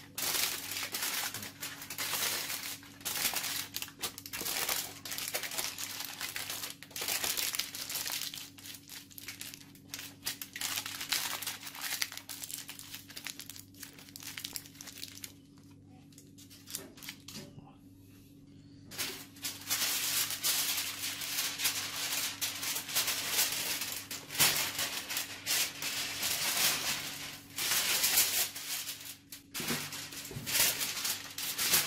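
Aluminium foil crinkling and rustling in irregular bursts as it is wrapped and pressed around tubers for roasting, easing off for a few seconds a little past the middle.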